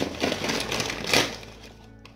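A plastic mail package being torn open and rustled by hand, with a sharp tear about a second in, then quieter.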